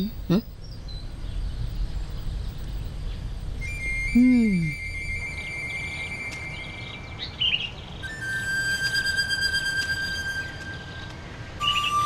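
Soft background music led by a flute holding long notes, coming in about four seconds in and moving to a lower note twice, over a steady low ambient hiss, with a few brief bird chirps.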